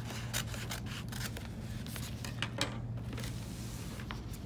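Scissors snipping through a sheet of white book-cover material cut from a roll: a run of short snips that stop about two and a half seconds in, over a steady low hum.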